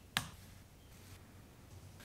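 A single sharp click of a laptop keyboard key, followed by faint room tone.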